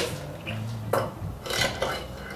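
Fingerboard wheels rolling over a tiled fingerboard obstacle, clicking as they cross the grooves between the tiles, with a few sharp clacks of the board against the surface.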